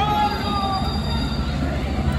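Police water cannon truck spraying protesters: a steady low rumble from the truck and its jet, with high squealing tones that glide slightly down, each lasting about half a second.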